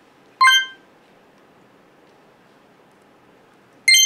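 Two short, bright electronic chime sound effects about three and a half seconds apart, each a single ringing ding that dies away quickly, the second pitched higher than the first. Faint hiss lies between them.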